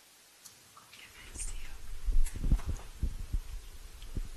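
Near silence for about a second, then courtroom microphones pick up irregular low thumps and rustling, with faint whispered voices.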